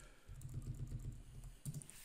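Faint computer keyboard typing as code is entered, with a few sharp keystrokes near the end over a low hum.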